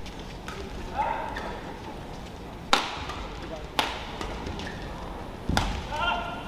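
Badminton rackets striking a shuttlecock during a fast doubles rally: a few sharp hits about a second or so apart, the loudest just under three seconds in.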